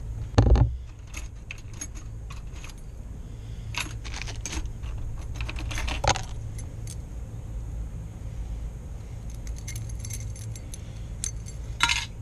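A knock as a metal lock cylinder is set down on a plastic bin lid, then light metallic clinks and jingling of keys and small lock parts being handled, over a steady low hum.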